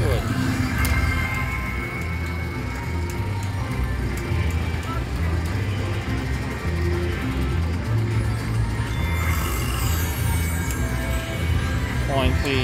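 Buffalo Gold slot machine playing its free-games bonus music, a repeating low melodic pattern, over a background of casino voices.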